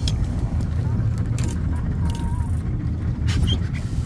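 Steady low rumble of the boat's engine running, with a few faint light clicks over it.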